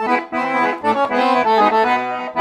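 Piano accordion playing a melody of quick, short notes.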